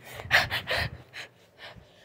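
A person's quick breaths close to the microphone, three short puffs about half a second in and fainter ones after, over low handling rumble.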